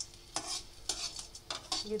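Metal spatula scraping and knocking against a metal kadai in about five quick strokes, stirring pieces of gond (edible gum) as they roast in a little ghee.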